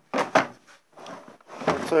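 Hard plastic Makita tool case being handled: two sharp clacks in quick succession as a tray or drawer of the case is shut, followed by lighter rattling.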